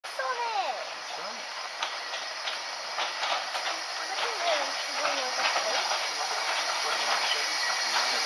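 Narrow-gauge steam locomotive Sir Handel approaching slowly with its train: a steady steam hiss and a run of sharp clicks, getting louder as it nears.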